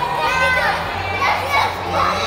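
Many children's voices chattering and calling out at once, overlapping, over a steady low hum.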